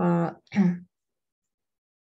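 A woman clearing her throat: a short two-part voiced "ahem" within the first second.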